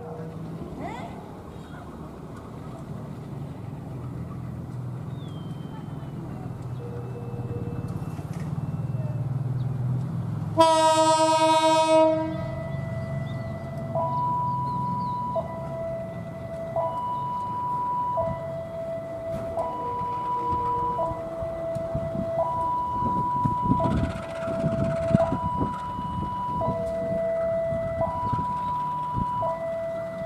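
Diesel-electric locomotive's engine rumbling low and building, then one loud horn blast of about a second and a half just before halfway, the departure signal. After it a warning signal alternates between a high and a low tone, each held about a second and a half, repeating steadily.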